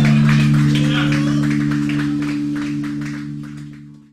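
A live rock band holding a sustained chord, with voices over it, the sound slowly falling away and then cutting off abruptly at the end.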